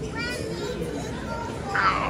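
Indistinct voices, among them a child's, with a steady hum of room noise in a busy dining hall. Short bits of voice come near the start and again near the end.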